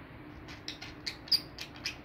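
Caged budgerigars chirping: a quick run of short, sharp, high-pitched chirps starting about half a second in, the loudest just past the middle.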